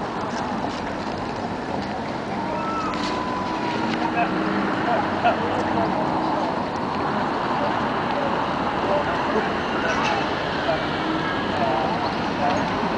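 Busy street ambience at a tram stop: scattered voices of passers-by over a steady background rumble, with a faint hum from a Luas tram moving alongside the platform.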